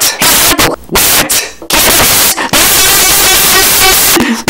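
A cartoon character's voice overdriven into harsh, clipped static, as if shouted right into the microphone. It comes in choppy bursts for the first couple of seconds, then runs on as an unbroken distorted blare.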